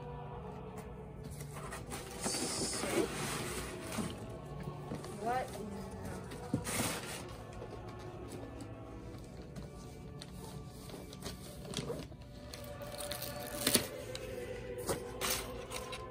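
Soft background music and murmured voices, with a few brief bursts of rustling and crinkling as gift packaging is handled and opened, and some sharp clicks near the end.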